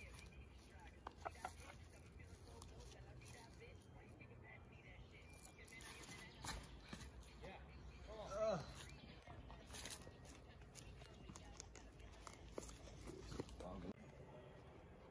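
Quiet outdoor ambience with a few faint knocks, and one short rising-then-falling vocal sound from a person about eight and a half seconds in.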